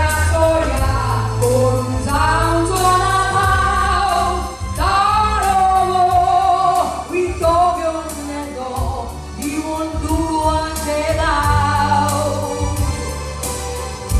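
A woman singing into a microphone through a PA, with long held notes, over amplified backing accompaniment with a steady beat.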